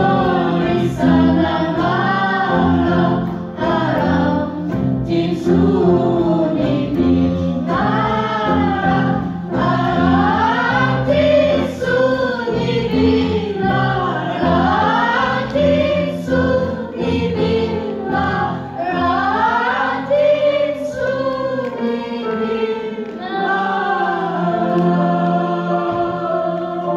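A women's choir singing an Arabic song with sliding, ornamented melodic lines, over accompaniment including oud and electric bass.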